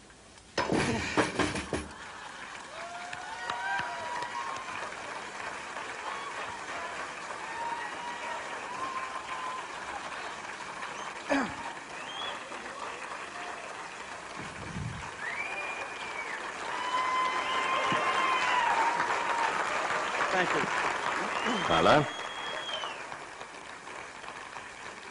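A slab on cinder blocks struck and broken: a sharp crack and a few quick clattering knocks about a second in. Then an audience applauding and cheering, with shouts and whistles, swelling to its loudest near the end.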